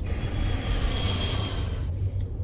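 Airplane flight sound effect: a steady jet rush with a faint high whine, starting and cutting off abruptly, over the low rumble of the car.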